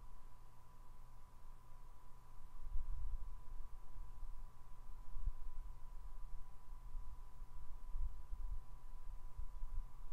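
Quiet room tone: a faint, steady high-pitched whine, with soft low thumps now and then, about three, five and eight seconds in.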